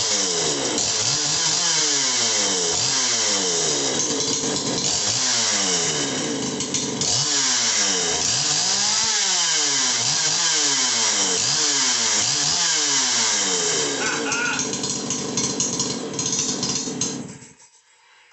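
Ported two-stroke chainsaw on its first run, revved up and down on the throttle over and over, about once a second, its pitch climbing and falling quickly. From about 14 s in it runs more evenly, then cuts off about half a second before the end.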